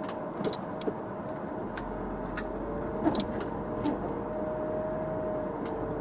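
Cabin noise of a 2005 Audi A4 moving slowly, heard from inside the car: a steady engine and road rumble with a held hum. A handful of short, sharp clicks come at irregular moments, the loudest about three seconds in.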